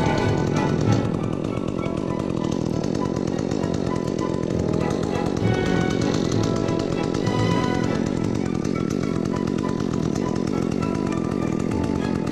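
Chainsaw running steadily as it cuts into a palm trunk, with background music playing over it.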